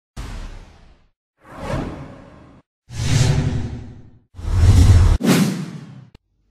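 Intro whoosh sound effects: five swishes in a row, each starting sharply and fading out, getting louder toward the end, the last two back to back.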